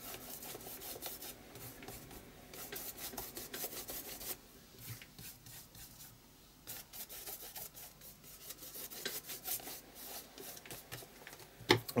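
A tool spreading gesso over a textured journal page, rubbing and scraping faintly in short, irregular strokes with a couple of brief pauses.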